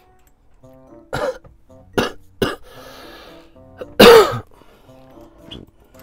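A person coughing and clearing the throat: three short coughs in the first couple of seconds, then a longer, louder cough about four seconds in, over soft background music.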